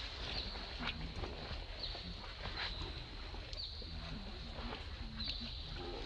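Steady high-pitched insect drone with short chirps about every second, over a low rumble. A few short, low grunt-like sounds come in the second half.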